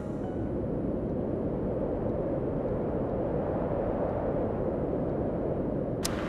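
Steady low outdoor rumble, even and without tones, such as wind buffeting the microphone or distant road traffic.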